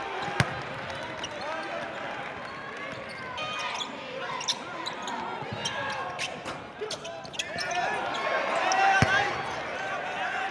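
Live basketball game sound in a gym: crowd chatter and shouting, sneakers squeaking on the hardwood, and the ball hitting the floor with a sharp thud about half a second in. The crowd swells into a cheer over the last few seconds, peaking with another sharp knock near the end.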